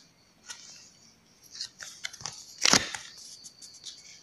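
Tarot cards handled on a table: a card slid out and turned over, with a few short scrapes and taps, the loudest a little under three seconds in.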